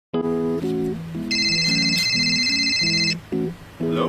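Background music with a melody of short notes, and a high electronic phone alert tone sounding for about two seconds in the middle: a new-email notification.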